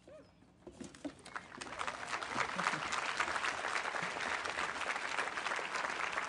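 Audience applauding: the clapping starts about a second in, builds over the next second, then holds steady.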